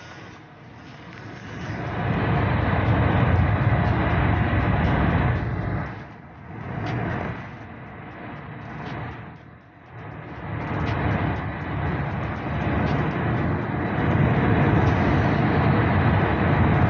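Road and wind noise of a car driving at highway speed, heard inside the cabin, swelling and fading and dropping away briefly twice.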